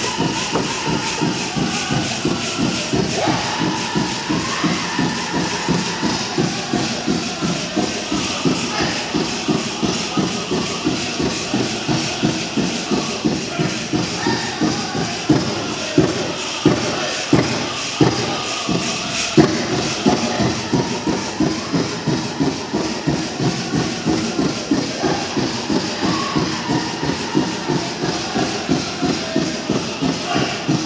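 Powwow drum and singers performing a song for women's jingle-dress dancers: a steady, even drumbeat under wavering group singing, with the metal cones on the dresses rattling along. About halfway through, a run of harder, louder drum strikes stands out.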